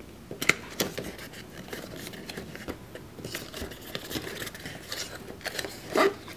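Small cardboard box being opened by hand: the lid flaps are pulled open and the box is handled, giving scattered light scrapes and clicks of cardboard.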